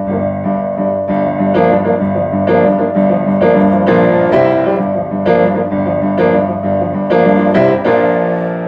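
Acoustic upright piano playing a rock shuffle pattern built on triplets, the two hands alternating to make the triplets, with accented chords over a held low note.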